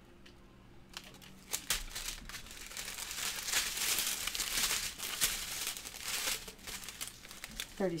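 Thin plastic bags of diamond painting drills crinkling as they are handled and laid on the table: a few sharp crackles about a second and a half in, then a dense rustle until near the end.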